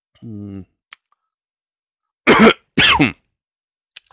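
A man coughs twice in quick succession, two short loud coughs about two and a half seconds in, after a brief hesitant 'uh' and a faint click.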